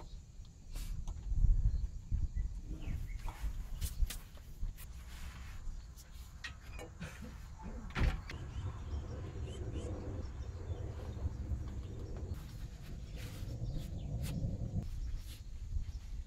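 Scattered metallic clicks and knocks of a fan pulley being handled and fitted onto a water pump, over a steady low rumble; the sharpest knocks come about four and eight seconds in.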